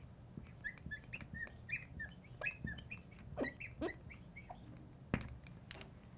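Marker writing on a glass lightboard: a string of short squeaks and scratchy strokes as a word is written, with a sharp click about five seconds in.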